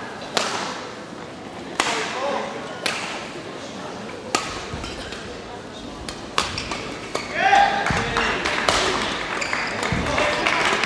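Badminton rackets striking a shuttlecock in a rally: sharp cracks about every second or so, echoing in a large sports hall over background voices. A voice calls out loudly about three quarters of the way through.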